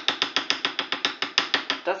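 Rapid, even metallic tapping, about ten taps a second, of a metal spoon against a steel cake ring.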